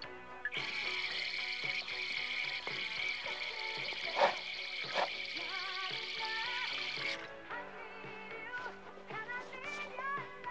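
Water running from a tap into a sink, a steady hiss that starts about half a second in and stops abruptly around seven seconds, with two short knocks about four and five seconds in. A pop song with singing plays underneath throughout.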